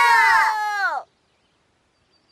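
Several cartoon children's voices together, drawn out on a long falling note that cuts off about a second in.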